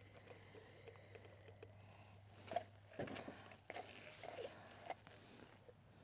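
Mostly near silence, with a few faint, short crackling noises between about two and a half and five seconds in, as water is poured into the hot tip of an Instantvap oxalic acid vaporizer.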